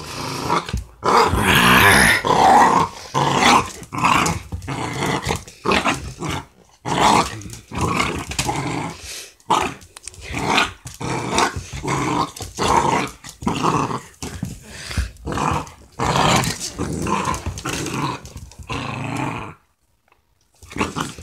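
A puppy growling in repeated short bursts while tugging on a rope toy: play growling in a game of tug-of-war.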